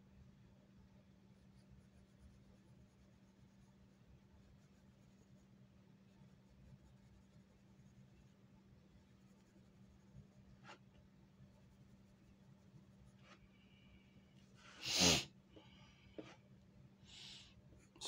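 Pencil lightly scratching on paper on a clipboard, faint, over a low steady hum. About fifteen seconds in, one short loud burst of breath from the person drawing, then a small click and a softer breathy sound.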